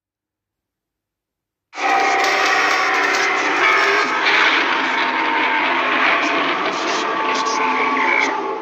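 Silence for nearly two seconds, then a loud, harsh, distorted scream from a horror TV ident cuts in suddenly and is held without a break.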